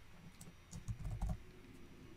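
A computer keyboard being typed on: a handful of faint, separate keystrokes.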